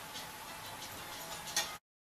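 Faint light ticks, a few a second, over a low room hiss; a sharper click comes near the end, then the sound cuts off to dead silence.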